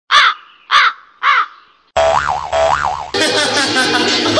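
Three short, loud calls of a comic sound effect, about half a second apart, dropped into a sudden break in the background music. About two seconds in, a second effect follows, its pitch rising and falling twice, before the music returns.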